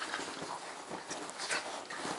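A Boston terrier and a Chinese crested dog play-fighting on a bed: a quick run of scuffles on the bedding mixed with short dog vocal sounds.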